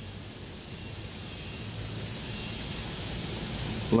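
Steady outdoor background hiss that swells slightly over the last few seconds, with no distinct event in it.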